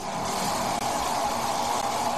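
Pork innards frying in sesame oil in a metal wok over a gas burner: a steady sizzle.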